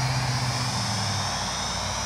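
Flyzone Nieuport 17 micro RC biplane's battery-powered electric motor and propeller whining steadily in flight, growing slightly fainter.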